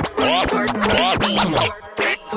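Vinyl scratching on a turntable: a record worked back and forth under the needle, its sound sliding up and down in pitch in quick strokes, cut on and off sharply with the mixer, with music playing under it.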